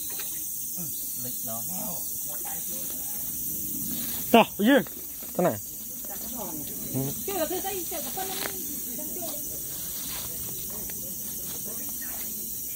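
Three short, loud voiced exclamations about four to five seconds in, then a few seconds of quieter indistinct talk, all over a steady high hiss.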